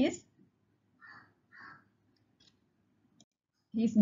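A woman's voice reading aloud. A pause of about three seconds breaks it, holding two faint, short, raspy sounds about half a second apart and one faint click near the end.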